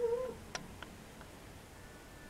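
A young man's drawn-out thinking hum, rising in pitch and breaking off about a third of a second in, followed by a few faint clicks.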